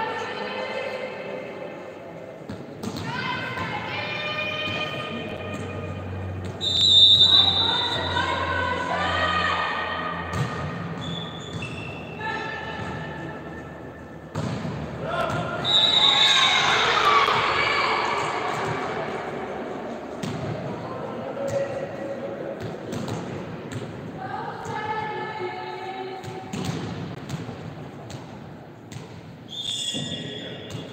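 Volleyball being played in a sports hall: the ball thuds off hands and the court while girls' voices shout and cheer, echoing in the hall. A louder, crowded burst of cheering comes about halfway through.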